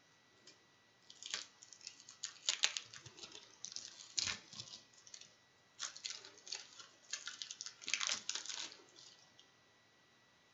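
Plastic wrapping on a small cigar pack crinkling and crackling in bursts as fingers pick at it, trying to get the pack open, with the longest stretch of crackling from about six to nine seconds.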